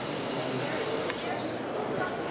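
Background chatter of many voices and hall noise on a busy trade-show floor, with a single sharp click about a second in.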